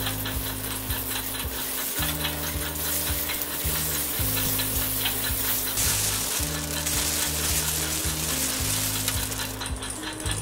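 Whole boiled eggs frying in hot oil in an aluminium pan: a steady sizzle, with the ladle knocking and scraping as it turns them.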